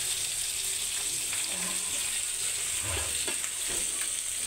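Steady sizzle of food frying in hot oil in a pan, with a few light knocks of a ladle against the pan about three seconds in.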